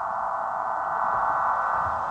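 A sustained electronic synthesizer chord held steady, part of the dramatic soundtrack music.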